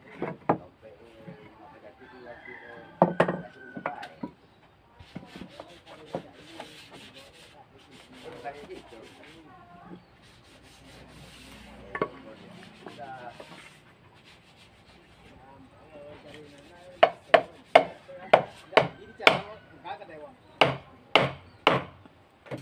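Wooden door boards being handled and slid against one another, with scattered knocks, then a quick run of about a dozen hammer taps on wood, about two or three a second, in the last five seconds, the loudest sounds here.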